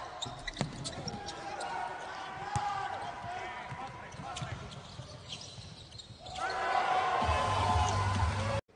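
Basketball game court sound: the ball bouncing on a hardwood floor, sneakers squeaking and players' voices. It gets louder about six seconds in.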